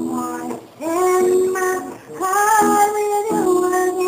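A woman singing a slow melody. About halfway through she slides up into one long held note.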